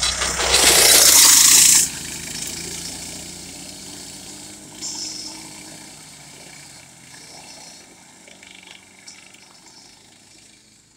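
Small engines of a youth ATV and a mini bike running. A loud rushing burst comes about half a second in and cuts off before two seconds. After it the engine sound fades steadily as the vehicles ride away down the gravel lane.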